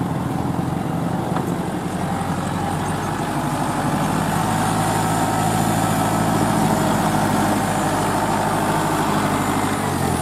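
Kubota L4508 tractor's diesel engine running steadily, a little louder in the middle.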